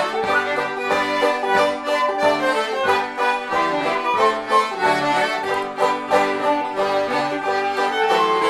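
Live acoustic tune played on fiddle, diatonic button accordion and banjo together: sustained accordion and bowed fiddle melody over evenly plucked banjo notes, keeping a steady rhythm.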